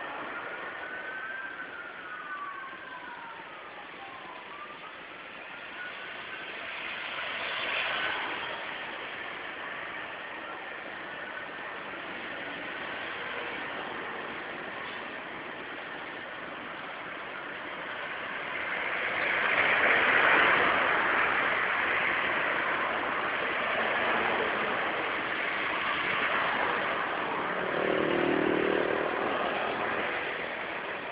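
Street traffic: vehicle engines and road noise, swelling loudest as a vehicle passes about two-thirds of the way through. In the first few seconds a siren glides up and down.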